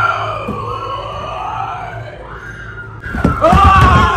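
People shrieking and wailing in fright, long cries sliding up and down in pitch, with a louder burst of screaming about three seconds in.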